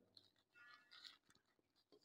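Near silence, with very faint rustling of a paper packet being unfolded by hand.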